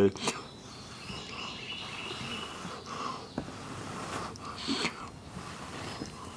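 A person blowing steadily into a coconut-husk tinder bundle holding a glowing char-cloth ember, to bring the ember to flame.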